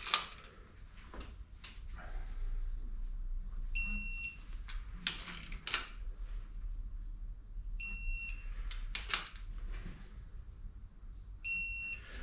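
Snap-on ATECH electronic torque wrench beeping each time it reaches its preset 60 ft-lb torque on a main bearing cap bolt: three short, high-pitched beeps about four seconds apart, with faint clicks from the wrench in between.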